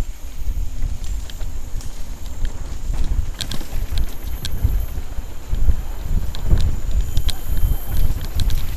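Wind buffeting the microphone of a helmet-mounted camera on a fast mountain-bike descent over a dirt trail, a gusting low rumble throughout. Irregular sharp clicks and rattles from the bike over rough ground cut through it.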